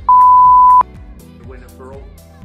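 An edited-in censor bleep: a single high, steady beep of about three-quarters of a second, blanking out a spoken word, likely the secret shaft name, over background music.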